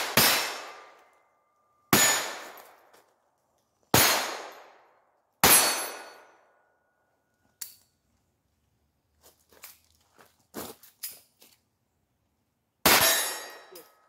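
Ruger SR22 .22 LR pistol firing at steel targets: four shots about one and a half to two seconds apart, some followed by a brief metallic ring of the steel plate. The gun runs dry, and the small clicks and clacks of a magazine reload follow, then one more shot near the end.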